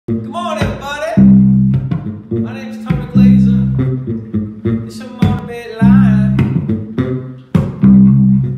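Electric bass guitar playing a repeating riff of low notes, the loudest held note coming back about every two to three seconds, with short sharp percussive clicks between them.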